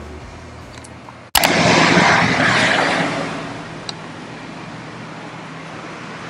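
A car passing by: its road noise swells quickly about a second and a half in, peaks, and fades away over the next two seconds, leaving a steady low outdoor background.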